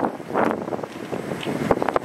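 Wind buffeting the microphone, an uneven gusty rush that rises and falls in loudness.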